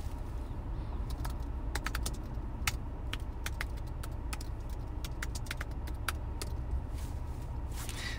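Keyboard keystrokes: short, sharp clicks in uneven runs as terminal commands are typed, over a steady low hum.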